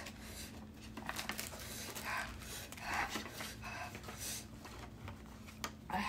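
A woman breathing hard through her mouth, short quick breaths about one a second, in pain from the burn of an extremely hot chili chip.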